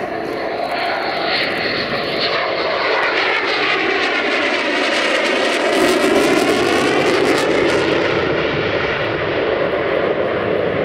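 Jet noise from the Lockheed Martin F-22 Raptor's twin Pratt & Whitney F119 turbofans as it makes a tight turn past, growing louder to a peak about six seconds in. A sweeping tone dips and rises through the noise as the jet goes by.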